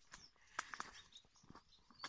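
Near silence on a scrubby trail: a few faint footsteps on stones and dry leaves, with faint bird chirps.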